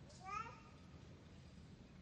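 A brief high-pitched squeak rising in pitch, about a quarter-second into a quiet lull.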